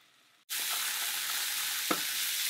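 Ground turkey sausage meat sizzling in a nonstick frying pan. The steady sizzle starts suddenly about half a second in, after a brief silence, and a spatula gives one short knock against the pan near the end.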